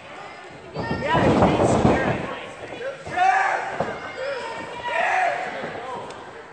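Shouted, unintelligible voices echoing in a large hall, in three loud outbursts about two seconds apart, over thuds from the wrestling ring.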